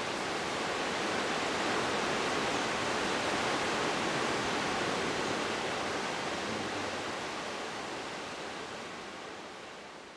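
Rushing whitewater rapids and falls, a steady rush of water that swells in over the first couple of seconds and then slowly fades out toward the end.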